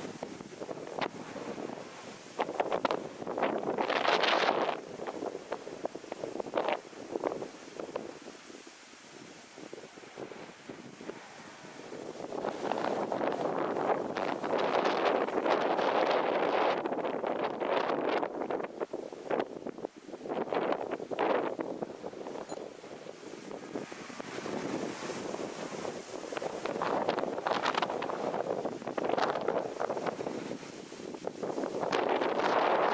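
Wind buffeting the microphone in gusts, swelling and fading every few seconds.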